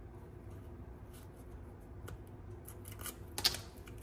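Faint small clicks and scratches of scissor tips picking at the backing of double-sided tape on folded cardstock, with one louder brief crackle about three and a half seconds in.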